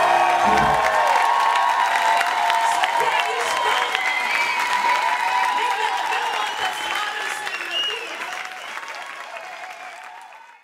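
A swing tune ends on a final chord that cuts off about a second in, and the audience breaks into applause with cheers and whoops. The clapping slowly fades near the end.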